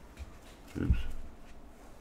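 A man's short, low-pitched "oops" about a second in, falling in pitch, over faint handling of trading cards.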